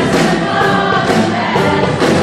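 A large choir of mixed voices singing a song with a band and orchestra (strings, guitars, brass) over a steady beat of about two strokes a second.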